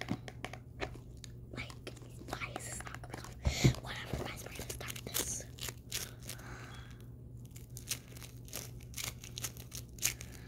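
Slime being squished and poked by hand, giving many small sharp crackles and clicks, with one louder knock about three and a half seconds in.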